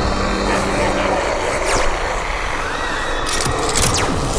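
Cartoon sound effect of electricity crackling and buzzing, like lightning arcing, with a held music note underneath that ends about a second in.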